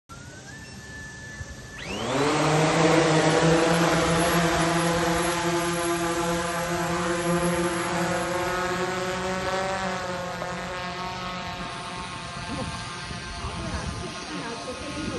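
Meituan multirotor delivery drone taking off: after a faint whine, its rotors spin up sharply about two seconds in to a loud, steady propeller buzz with a clear pitched hum, gradually fading as the drone climbs away.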